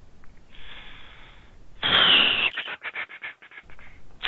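Breath into a call participant's microphone: a soft breath, then a louder, sharp exhale about two seconds in, followed by a quick run of small clicks.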